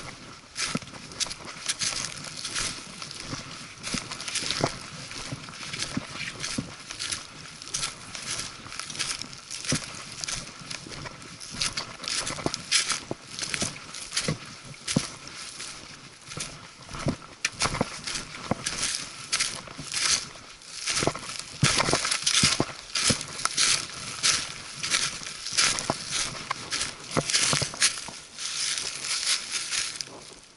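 Hiker's footsteps crunching through dry leaf litter on a forest path, with hiking poles tapping the ground: a fast, uneven run of crunches and clicks that grows louder in the second half.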